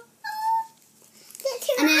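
A short, high-pitched vocal squeak lasting about half a second, rising slightly and then holding its pitch.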